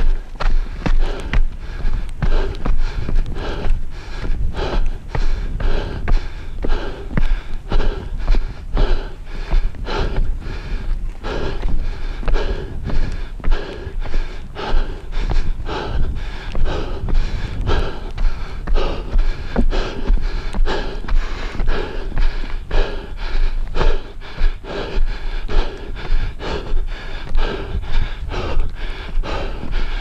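Fast footsteps climbing railway-tie stairs, about two steps a second, with the climber's hard breathing close to the microphone.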